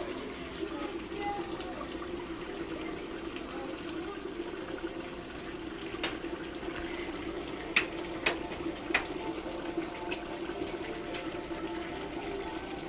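A pot of cabbage and meat simmering in liquid on the stove: a steady low hum with a faint bubbling hiss, and a few sharp pops between about six and nine seconds in.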